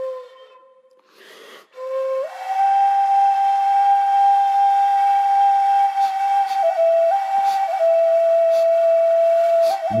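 Solo flute playing slow, long held notes: a note fades away at the start, then after a short breathy sound a new note slides up and is held, stepping down to a slightly lower note with small turns around it about seven seconds in.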